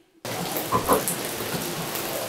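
Steady rain falling, a continuous even hiss that begins suddenly just after the start.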